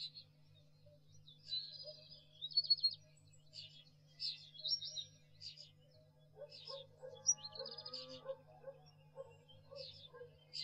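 Birds singing in short chirps and trills, one after another, over quiet background music that grows fuller about six seconds in.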